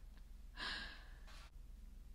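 A woman's nervous sigh: one breathy exhale about half a second in, followed by a shorter, fainter breath, with a faint click near the middle.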